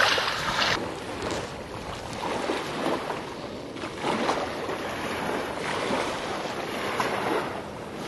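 Surf breaking and washing up a sandy beach in repeated swells every second or two, with some wind on the microphone.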